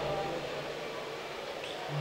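A pause in a man's speech through a microphone and loudspeakers: the tail of his last words fades into a low, steady background hiss. His voice starts again right at the end.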